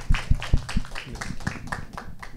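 A small group of people applauding in a meeting room, with irregular, overlapping hand claps.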